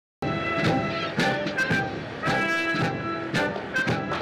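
Military brass band playing, held brass notes changing with struck drum beats in between; it starts abruptly just after the opening.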